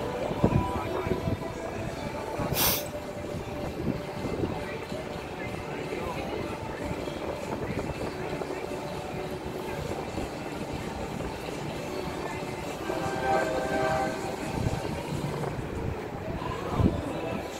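Steady rumble of NASCAR Cup Series haulers, diesel semi trucks, moving in the distance, with voices mixed in. A short hiss comes about two and a half seconds in.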